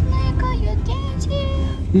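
Car cabin rumble from a car on the move, a steady low drone from road and engine, with faint high-pitched singing over it.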